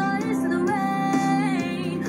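A woman singing a pop song over instrumental backing, holding one long note through the middle.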